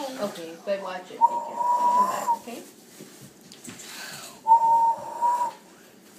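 Two steady whistled notes at one pitch, each about a second long, the second a few seconds after the first.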